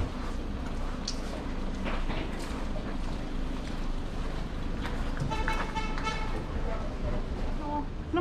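Outdoor background of distant voices and a steady hum, with a car horn sounding for a little over a second just past the middle.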